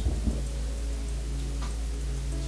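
Background film score: sustained low notes over a steady hum, with a few faint ticks.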